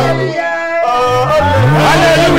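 Gospel music: a singing voice sliding between pitches over sustained bass and keyboard notes, with the bass dropping out briefly about half a second in.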